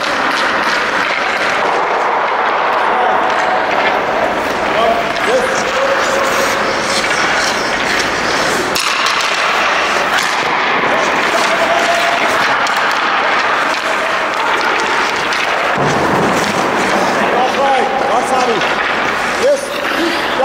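Indoor ice rink practice noise: a steady wash of sound with faint distant voices and calls through it.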